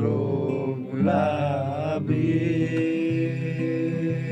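Acoustic guitar picked with a plectrum, accompanying a singing voice; the voice holds a long wavering note about a second in.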